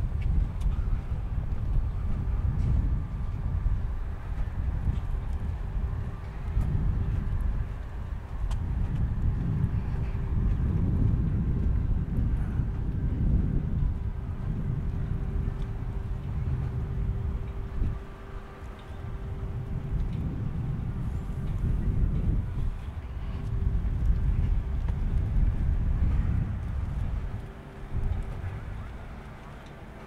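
Wind buffeting the microphone during an outdoor walk: a low rumble that swells and drops every few seconds, with a faint steady hum underneath through the middle stretch.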